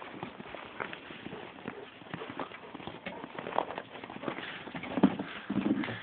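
Footsteps crunching through snow, an irregular run of crunches that grows louder toward the end.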